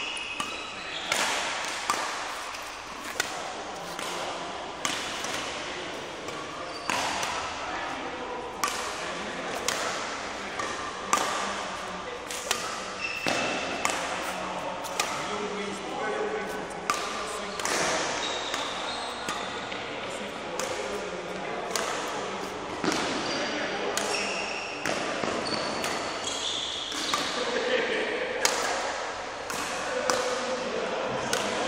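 Echoing sports-hall sounds: irregular sharp hits about once a second, typical of rackets striking shuttlecocks on badminton courts, with a few short high squeaks like court shoes on the floor and voices in the background.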